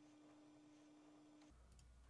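Near silence: room tone with a faint steady hum that stops about one and a half seconds in.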